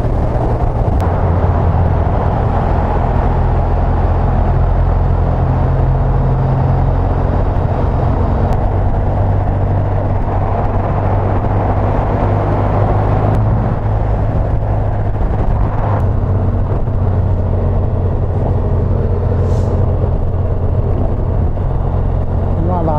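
Honda Crosstourer motorcycle cruising at steady motorway speed: a continuous low V4 engine drone under steady wind and road rush, heard from on the bike.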